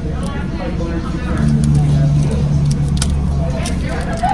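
Car engine idling, heard from inside the cabin as a steady low rumble, with faint voices outside the open window. A steady hum comes in for about two seconds in the middle, along with a few light clicks.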